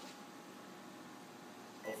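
Faint steady hiss with a thin, steady high tone from an air-bearing spindle test rig running with its air supply on.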